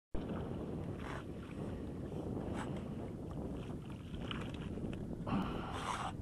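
Wind buffeting the microphone over lapping water, broken by short splashes of a hooked fish thrashing at the surface. A longer, louder splash comes near the end.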